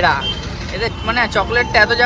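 People talking, with street traffic noise in the background.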